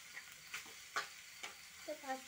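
A spatula scraping and turning chow mein noodles in a frying pan over a faint sizzle, with three short scrapes about half a second apart.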